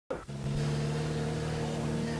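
Car engine running steadily, heard from inside the cabin as a low even hum, after a short click at the very start.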